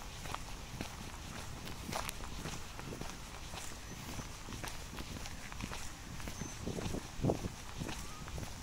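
Footsteps of a person walking at a steady pace on a sandy, fine-gravel park footpath.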